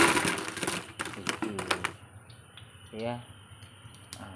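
Crisp fried horn-plantain chips tipped from a wire strainer into a plastic bucket: a dense rattle that dies away in the first half second, then a scatter of sharp clicks as the last chips drop.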